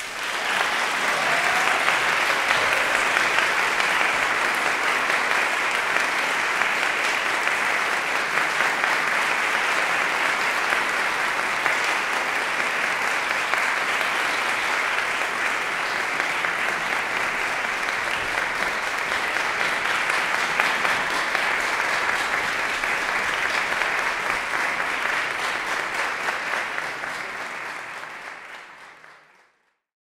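Audience applauding steadily, a dense patter of many hands clapping that starts suddenly and fades out near the end.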